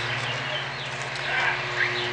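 Outdoor background: a steady low hum, with a few faint bird chirps about halfway through.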